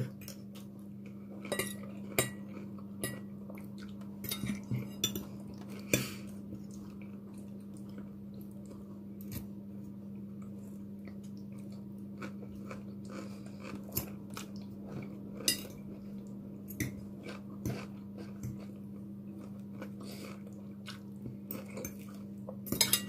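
Forks clinking and scraping on dinner plates during a meal, in scattered light taps with a few sharper clinks, and some chewing. A steady low hum runs underneath.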